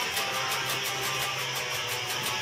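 Quiet electric guitar playing over a steady amplifier hum, with no drums yet.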